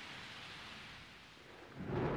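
Faint, steady rain and wind noise of a rainforest storm, slowly fading, then a low rumble swelling near the end.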